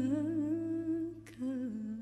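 A woman singing an unaccompanied Arabic Sufi vocal improvisation: a closing ornamented phrase with wavering vibrato. It breaks briefly after a short click, then settles on a lower held note that fades near the end, over a low steady hum.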